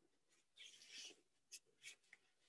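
Faint handling noise close to the microphone: a rustling scrape from about half a second in, then two short scratchy sounds near the end.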